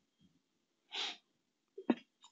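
A single short breath noise from a man close to the microphone, about a second in, followed by a faint mouth click just before he speaks.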